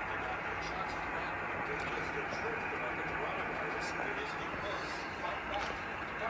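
Steady hiss of receiver static from an amateur radio transceiver, heard through its speaker, with a faint low hum underneath.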